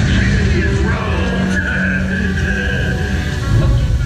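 Loud show soundtrack of music mixed with a rushing, screeching sound effect, played over large outdoor speakers, with a sustained high tone through the middle.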